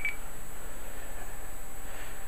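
A short high beep from a Motorola i355 iDEN phone as it switches into DirecTalk mode, ending just after the start. It is followed by a steady background hiss.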